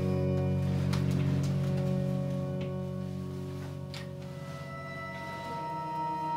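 Live looped electronic music: layered, sustained drones and steady held tones from theremin and laptop (Max/MSP) loops, with a few clicks. A new, higher held tone enters near the end.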